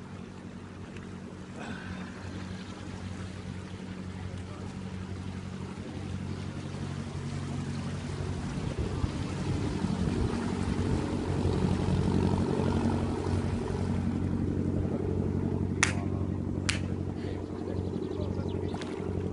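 Small river cruiser's engine running at low speed, a steady low drone that grows louder as the boat comes close and passes. Two sharp clicks near the end.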